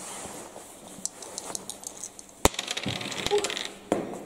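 A small die thrown onto a wooden tabletop during a board game: one sharp click about halfway through, with a few lighter taps and clicks around it.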